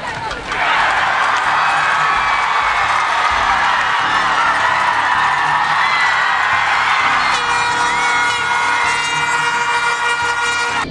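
Football crowd cheering loudly in the stands as a punt is blocked for a safety. A steady horn note joins about seven seconds in and holds.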